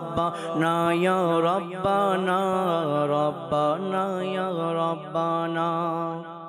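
Man singing a Bengali devotional naat solo into a microphone, in long wavering, held notes over a steady low drone.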